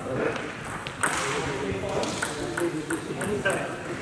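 Table tennis ball bouncing in a run of short, light clicks, one about a second in and several more spaced irregularly in the second half, over background voices.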